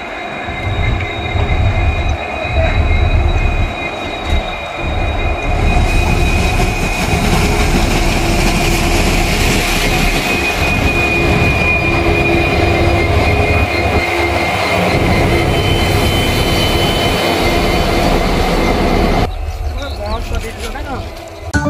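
Diesel locomotive passing close by over a steel rail bridge: a heavy low rumble with a steady high-pitched whine on top. The sound cuts off suddenly just before the end.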